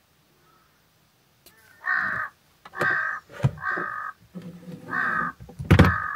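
Crows cawing outside, about five separate caws starting around two seconds in after a near-silent start. A sharp knock near the end is the loudest single sound.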